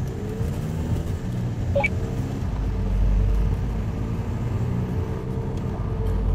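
Engine and road rumble heard from inside a Volkswagen car as it accelerates toward 50 km/h, the engine note rising a little in the first second and then running steadily. A short high sound comes about two seconds in.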